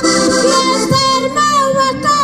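A woman singing a verse of Portuguese cantar ao desafio into a microphone, her voice climbing in steps through the line, over two diatonic button accordions (concertinas) playing a steady accompaniment.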